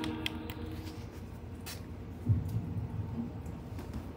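Quiet handling noise with a few light clicks and a soft low thump as someone tries to power on a dead laptop; no startup sound follows, because the laptop does not turn on. Faint background music fades out in the first second.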